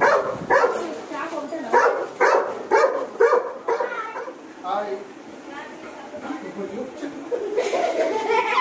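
A pet dog barking in short, repeated barks about two a second through the first half, then quieter.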